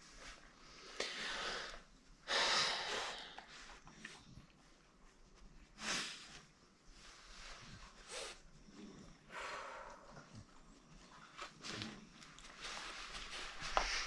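Dogs sniffing and snorting: short, breathy puffs at irregular intervals, the loudest about two and a half seconds in.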